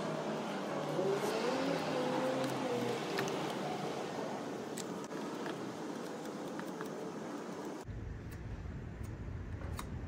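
A car going by: a steady rush of road noise with an engine note that rises and then falls over the first few seconds, and a few faint clicks. The sound cuts off about eight seconds in.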